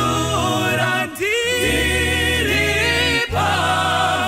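A group of voices singing a hymn in harmony, in Shona, phrase by phrase with brief breaks between lines.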